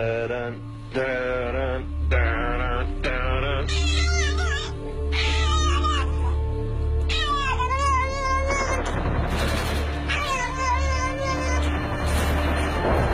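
Music with a steady bass line and a cat meowing over it, the meows coming about once a second at first and then as longer, wavering calls. From about eight seconds in, the music turns denser and noisier.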